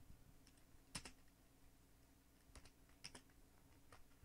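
Faint computer-keyboard typing: a handful of separate keystrokes, the loudest about a second in.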